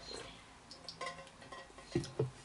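Quiet room with a few faint clicks and soft knocks, one about halfway through and a sharper one at the end.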